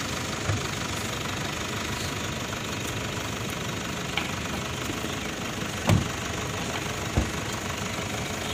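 An SUV's engine idling steadily close by, with two dull thumps about six and seven seconds in.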